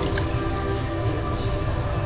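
Water running into and through a shallow stone-lined foot bath, a steady low rumble with an even splashing hiss, over which several steady tones hum.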